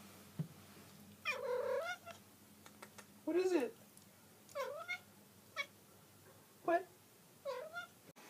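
Calico cat meowing close up, six meows in about seven seconds; the first, about a second in, is the longest, and each call rises and falls in pitch.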